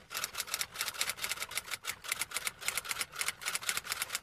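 Typewriter sound effect: a quick, uneven run of key clacks, about eight a second, as on-screen text is typed out.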